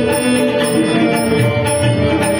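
Marathi devotional abhang: a young girl singing over a harmonium melody, with tabla and pakhawaj playing the rhythm.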